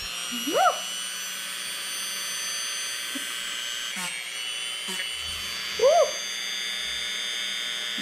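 Dremel rotary tool on its low setting running steadily, its 120-grit sanding band grinding down the edge of craft foam. Twice, about half a second in and again near six seconds, a short rising vocal yelp cuts in as the spinning band takes some skin.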